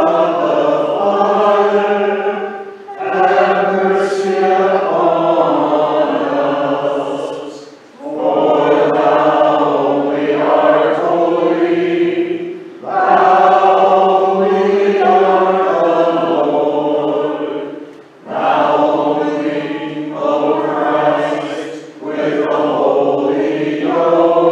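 A church congregation singing a sung part of the liturgy, in phrases of about four to five seconds with short breaks for breath between them.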